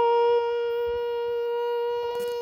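Conch shell (shankha) blown in one long, steady, unwavering note.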